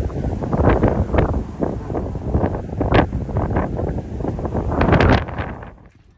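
Wind buffeting the phone's microphone, a loud gusty rumble with irregular surges. It drops off sharply near the end.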